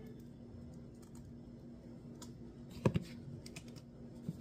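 Small clicks and taps of hands handling bread, bacon and a plastic bottle on a kitchen countertop, with a louder knock about three seconds in and a few light ticks after it, over a faint steady hum.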